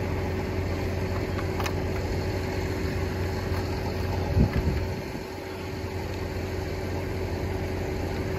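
An engine idling steadily, with a single sharp click about one and a half seconds in and a brief low thump a little before the halfway point.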